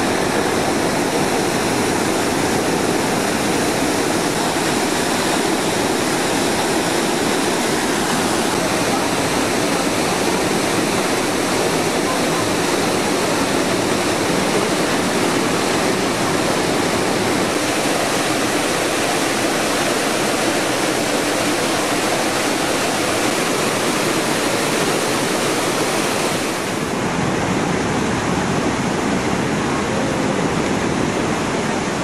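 Waterfall pouring over a rock face, a loud, steady rush of falling water. Near the end the sound changes abruptly to surf breaking on a beach.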